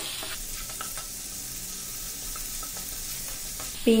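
Melted butter sizzling and bubbling in a nonstick frying pan, a wooden spatula stirring through it. A steady sizzle, with a few faint scrapes of the spatula near the start.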